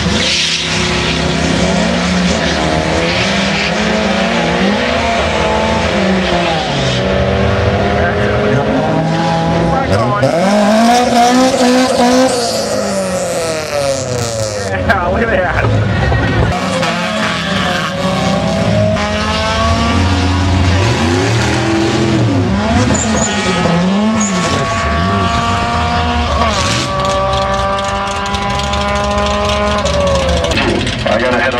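Big-block 496 V8 in a 1970 Chevelle drag car accelerating hard down the strip, its pitch climbing in long sweeps broken by drops at the gear changes, with other race-car engines and voices mixed in.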